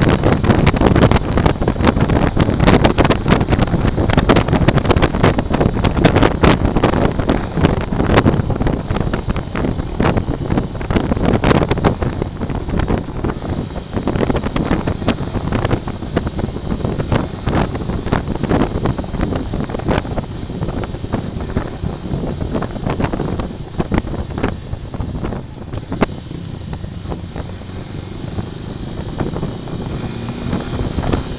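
Wind buffeting the microphone of a motorcycle-mounted camera, with engine and road noise beneath, while riding at highway speed; the rush eases in the second half as the bike slows.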